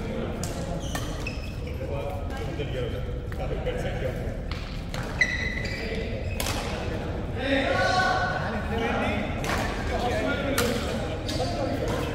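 Badminton rackets hitting shuttlecocks in a large sports hall: sharp hits at irregular intervals, the loudest about five seconds in, echoing in the hall, with players' voices mixed in.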